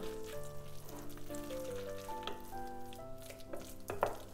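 Wooden spatula stirring sautéed grated carrot, onion and raw egg in a glass bowl: a soft wet churning with small scrapes. Quiet background music plays over it, a slow melody of held notes.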